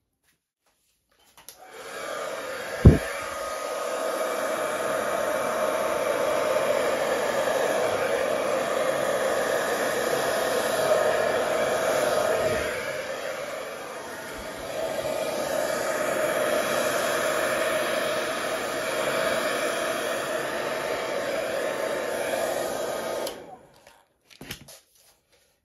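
Electric hair dryer running steadily, blowing wet acrylic paint across a canvas to fan it out in a Dutch pour. The air noise eases off briefly about two-thirds of the way through. One sharp knock comes about three seconds in.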